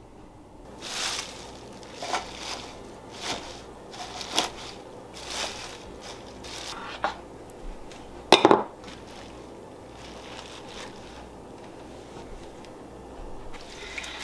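Curly kale leaves being handled and pressed onto a metal freeze-dryer tray: scattered rustles and light knocks about once a second, with one sharp clank about eight seconds in.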